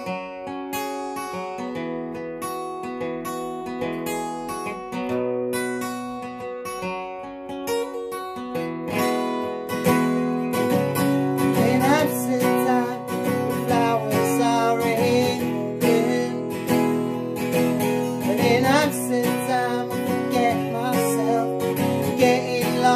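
Solo acoustic guitar playing a song intro, picked chords ringing out. About ten seconds in, a man's voice begins singing over it and the guitar gets louder and fuller.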